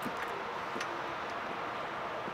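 Steady background noise with a couple of faint metallic clicks as a semi-trailer's swing door is unlatched and swung open.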